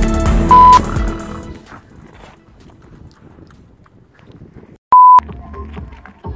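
Electronic music fading out over the first second and a half, cut across by a short, very loud, steady pure beep tone about half a second in. A second identical loud beep of about a quarter second sounds near five seconds in, after a moment of silence.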